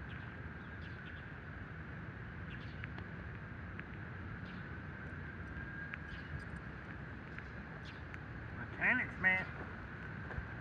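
Steady outdoor background noise with a constant faint high hum. Near the end, two short pitched voice sounds come in quick succession.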